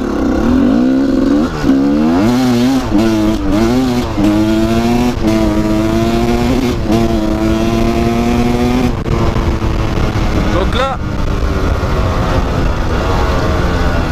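Gas Gas EC 250 two-stroke enduro motorcycle engine under hard acceleration, its revs climbing and dropping back several times as it shifts up through the gears. It then holds a steady high note for a few seconds before the throttle is eased off about nine seconds in, leaving wind and rolling noise.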